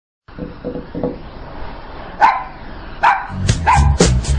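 Small long-haired dog barking three times, sharp and high, spaced under a second apart, after a few faint short whimpers. Music with a strong beat starts under the last two barks.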